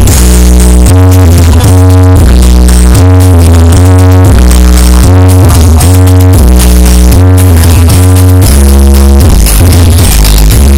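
Very loud electronic dance music blasting from a large outdoor sound-system rig, with heavy bass notes that change in a steady pattern about once or twice a second.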